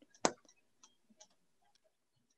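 A single sharp click about a quarter second in, followed by a few much fainter ticks, in otherwise near-silent audio.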